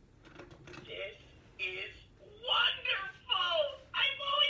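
Olaf toy's recorded voice talking through its small speaker, high and bright, starting about a second in after a few short clicks as its nose is pressed.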